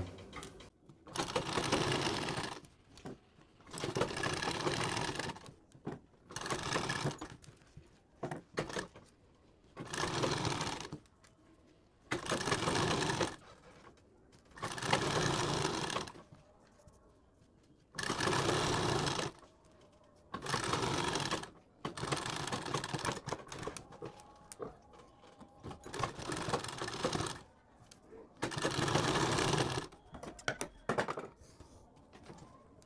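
Domestic straight-stitch sewing machine sewing a seam along the edge of a fabric strip in short runs of one to two seconds, stopping briefly between them, about eleven runs in all.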